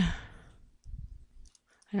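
A breathy trailing-off of the voice, then a few soft computer-keyboard clicks as a word is typed. Speech starts again at the very end.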